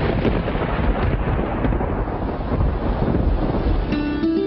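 Thunderstorm: steady rain with a continuous low rumble of thunder.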